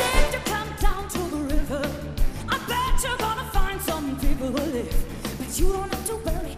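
A live band playing pop music while a lead vocalist sings over a steady beat.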